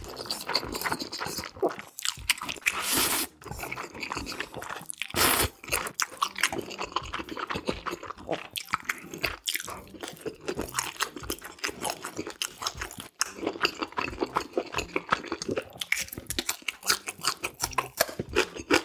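Close-miked eating of black-bean-sauce ramen noodles and green onion kimchi: wet chewing and crunching with many small mouth clicks, and a couple of longer slurps in the first few seconds.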